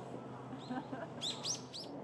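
Small birds chirping: a couple of short, high chirps about halfway through, then a quick run of three or four louder ones near the end, over steady low background noise.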